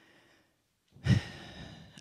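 A woman sighing into a handheld microphone: about a second in, a long breathy exhale, with a thump of breath on the mic at its start.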